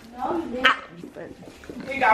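A person's brief vocal sound, quieter than the talk around it, with a sharp burst about two-thirds of a second in.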